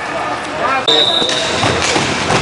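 One short, steady referee's whistle blast about a second in, over voices and the clatter of roller-hockey sticks, ball and quad skates on a wooden hall floor.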